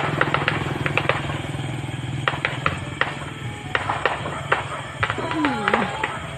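Firecrackers going off in the distance: many sharp pops and cracks at irregular intervals, over a steady low hum and background voices. A falling tone sounds near the end.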